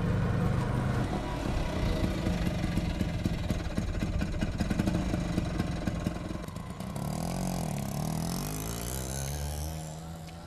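Auto-rickshaw's small engine running with a rapid, even putter; about seven seconds in its pitch dips and rises again.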